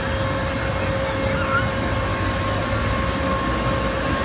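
Amusement ride machinery running steadily: a constant mechanical hum with a fixed whine over a low rumble, as the hang-glider ride swings its riders round.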